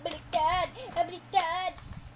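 A child's voice singing three short, swooping phrases.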